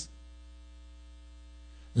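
Steady electrical mains hum with a ladder of evenly spaced overtones, the background hum of the recording chain heard in a pause in the speech.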